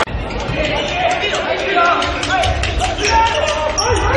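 Voices and chatter echoing in a large indoor sports hall, over steady crowd noise, during a volleyball rally. The sound jumps at the start, as at an edit cut.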